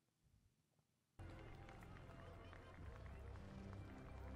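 Near silence, then about a second in the TV episode's soundtrack cuts in abruptly: steady music with held notes over outdoor ambience with a deep low rumble.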